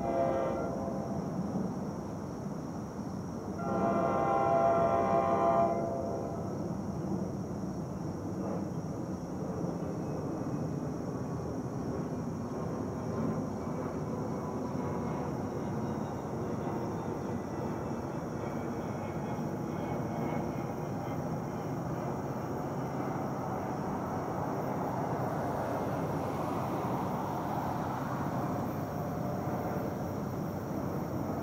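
Distant locomotive horn sounding two blasts, a short one and then a longer one of about two seconds, several notes sounding together. A low steady rumble of the approaching train follows.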